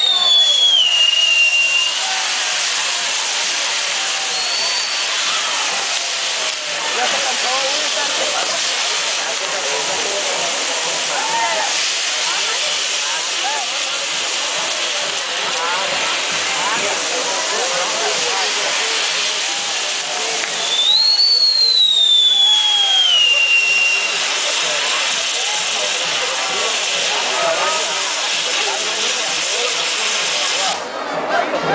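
Castillo firework tower burning: a steady loud hiss of spark fountains and spinning fire-wheels, with crowd voices beneath. Twice, near the start and again about two-thirds of the way through, a high whistle falls in pitch over about two seconds.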